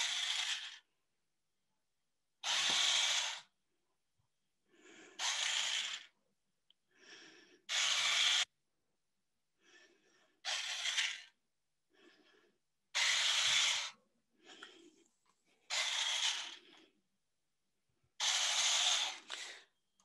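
Snap Circuits rover's drive motors and gears running in short bursts, about one every two and a half seconds, with silent pauses between: the robot car driving its programmed loop of straight runs, stops and right turns.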